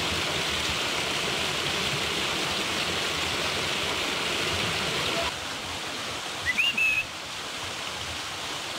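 Small waterfall splashing over rock into a pool, a steady rushing of water that drops quieter about five seconds in. Near the end comes a brief high chirp that rises and then holds.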